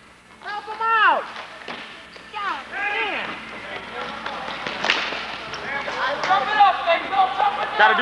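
Spectators at a ball hockey game shouting, in short calls that fall in pitch, over the general noise of the rink. There is a single sharp crack about five seconds in.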